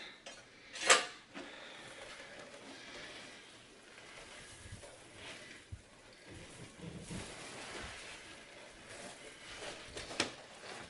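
A sharp metal clack of hand tools about a second in, then soft rustling and scuffing as a large sheet of carpet is dragged up and folded back over the floor.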